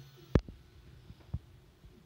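Two dull low thumps, a loud one near the start and a softer one about a second later. They fit handling knocks from the handheld camera as it is swung around.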